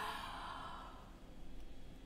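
A woman's soft exhaled sigh that trails off, then a faint breath near the end.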